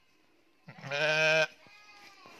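A sheep bleats once, a single quavering call under a second long, starting about half a second in.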